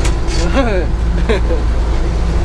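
Bizon combine harvester's diesel engine running steadily, a constant low drone heard from inside the cab. A man's voice speaks briefly over it.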